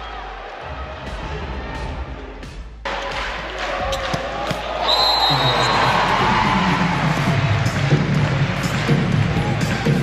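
Indoor volleyball match: sharp hits of the ball over the noise of an arena crowd. The crowd noise swells and stays loud from about halfway through.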